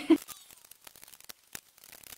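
Plastic liquid lipstick tubes clicking lightly against each other as they are picked up and set down by hand, a scatter of small irregular taps.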